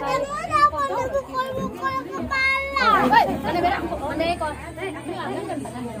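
Women and children talking over one another, with a high-pitched child's voice near the start and a high voice sliding steeply down in pitch about three seconds in.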